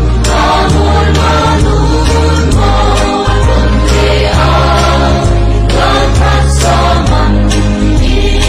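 A mixed choir of men and women singing a Christian gospel song in Zou, with an instrumental backing of held bass notes.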